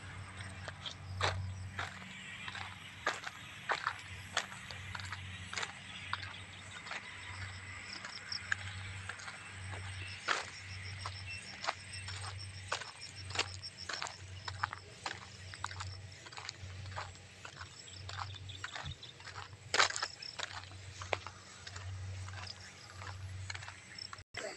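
Footsteps of a person walking on a gravel road, a dull thud with each step about once a second, with scattered sharp clicks and crunches.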